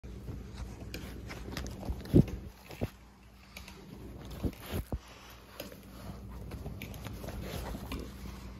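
Black Labrador retriever puppies scrambling and mouthing up close to the phone, giving a string of dull knocks and handling bumps, the loudest a little after two seconds in and a few more near the middle, over a faint steady hum.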